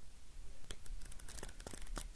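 Pages of a paperback book rustling and crackling as they are bent back and riffled by hand, with a quick run of small paper clicks in the second half.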